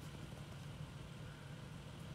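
Jeep Liberty engine running steadily in gear, driving its jacked-up wheel at high speed; a faint, steady low drone.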